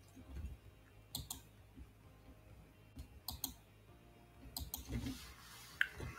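Faint clicking at a computer, mostly in quick pairs: a pair about a second in, another at about three and a half seconds, and a third at about four and a half, with a single click between them. Soft low thumps come at the start and near five seconds.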